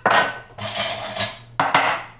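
Lid being twisted off a glass storage jar: a sharp click, a scraping grind as it turns, then another sharp knock near the end as kitchen utensils are handled.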